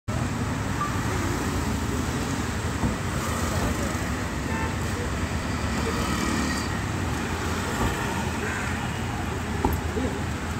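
Steady street traffic noise: vehicle engines running and passing, with voices in the background.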